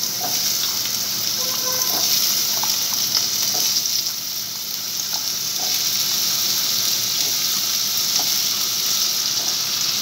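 Food frying in hot oil in a pan, a steady sizzle with a few faint clinks scattered through it.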